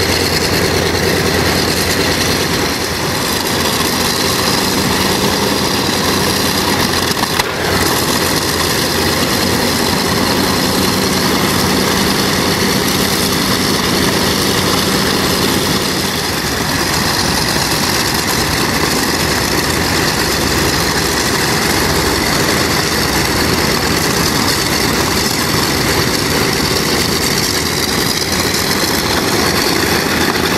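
Douglas DC-6A's Pratt & Whitney R-2800 radial piston engines running steadily at low power, propellers turning, with a layered drone. The pitch rises slightly near the end.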